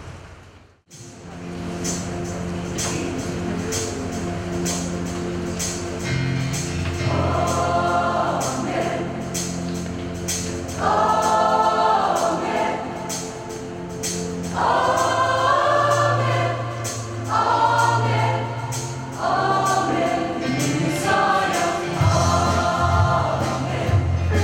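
Mixed choir singing a gospel song in phrases, entering about seven seconds in over a sustained instrumental introduction with a light steady beat. A brief dropout comes just under a second in.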